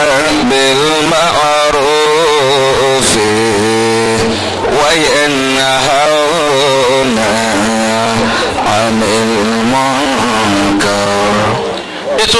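A man's voice chanting in long, melismatic phrases, held notes wavering up and down in pitch, with short breaks a few seconds in and just before the end.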